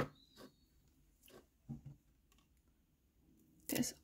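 Faint handling sounds of a plastic spray bottle and its cardboard box being worked free of the glued packaging: a few scattered soft clicks and taps with quiet gaps, then a louder rustle of handling near the end.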